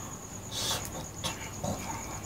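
A steady, evenly pulsing high-pitched trill typical of an insect, with a short loud hiss about half a second in and a faint click a little after one second.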